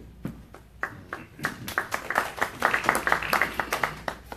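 A small audience applauding: scattered claps start about a second in, thicken into brief applause, and stop just before the end.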